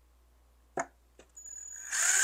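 Cordless drill driving a screw through a metal L bracket: a single click a little under a second in, then the motor starts with a steady high whine about a second and a half in and grows louder toward the end.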